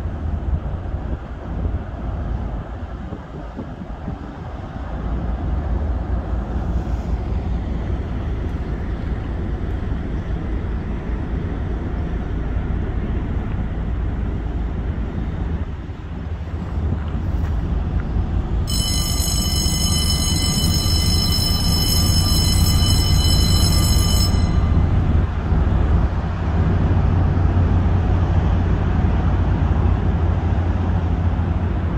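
The lift bridge's warning bell rings for about six seconds, starting a little past the middle, signalling that the raised span is about to be lowered. Under it is a steady low rumble that grows louder in the second half.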